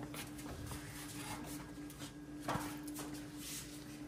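Faint rustling and a few light knocks as a wooden kitchen cabinet door is opened, the clearest knock about two and a half seconds in, over a steady low hum.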